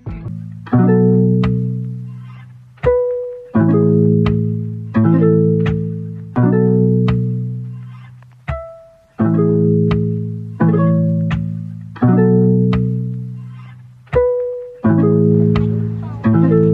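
Background music: a plucked-string instrumental of bass-heavy notes that each ring and fade, in a repeating phrase of about one note every second and a half.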